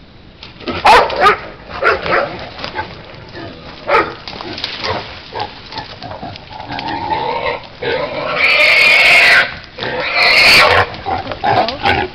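Wild hog sow squealing as she is caught, with short sharp cries in the first few seconds, then two long, loud squeals a little after the middle.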